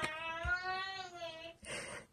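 A young boy's voice in the background, holding one long wordless vocal note for about two seconds at a nearly level pitch.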